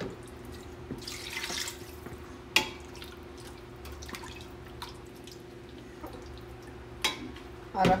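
Silicone spatula scraping marinated meat and masala out of a plastic bowl into a steel pot and stirring it, with a sharp knock about two and a half seconds in and another near the end. A steady low hum runs underneath.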